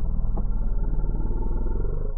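A loud, steady low rumble, with nothing above a middling pitch.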